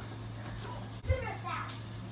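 A child's voice talking faintly in the background over a steady low hum, with a soft knock about a second in.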